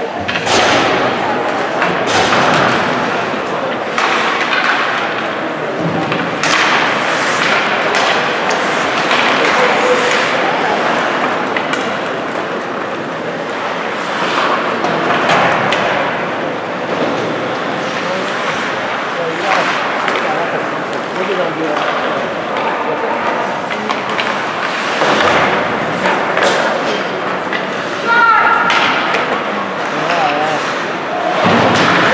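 Ice hockey game in play in an indoor rink: sticks, puck and bodies knock and thud against the boards in frequent sharp impacts, under a continuous hubbub of players' and spectators' voices.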